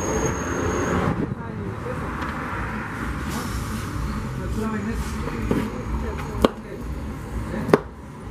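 Steady low background noise with faint voices, then two sharp knocks about a second apart near the end, from elote being prepared at a wooden table.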